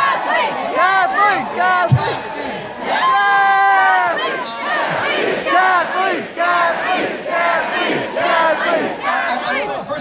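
Large concert audience cheering and screaming, full of short overlapping whoops, with one long held yell about three seconds in.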